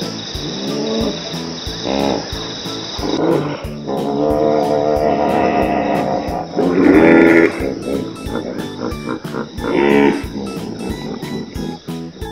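A hippopotamus calling several times, with the longest call about four seconds in and the loudest about seven seconds in, over background music with a steady beat.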